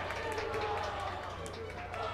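Indistinct voices talking in the background, with a few faint clicks.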